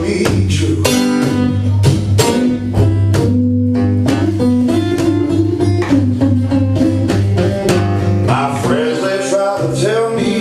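Solo acoustic guitar strummed rhythmically over a held low bass note in a live blues song. A man's singing voice comes in near the end.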